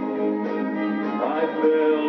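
Live country band with orchestra playing an instrumental passage between sung lines, guitar among the instruments.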